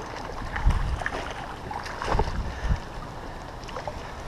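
A hooked rainbow trout being played at the surface of a creek: light splashing of water with a few dull thumps.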